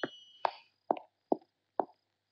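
Footsteps of a man coming down a staircase, four evenly paced steps about two a second.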